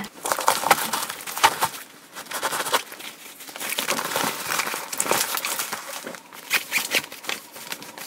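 Irregular rustling, scraping and crinkling handling noise close to the microphone, as hands rub over a fabric kit bag and the camera is moved. Many small uneven clicks and rubs, no steady sound.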